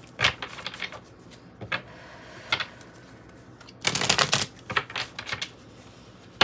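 An oracle card deck being shuffled by hand: irregular runs of quick card clicks and flutters, with the busiest burst about four seconds in.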